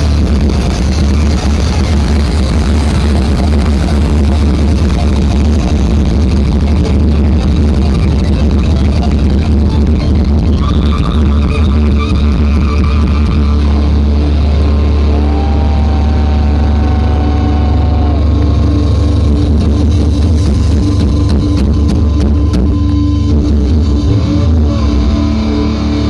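Rock band playing live through a festival PA, heard from the crowd: a loud, steady bass drone under distorted electric guitar. Partway through, a held note wavers in pitch.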